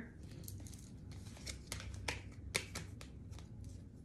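A deck of tarot cards being picked up and shuffled by hand: faint, irregular soft clicks and snaps of the cards against each other.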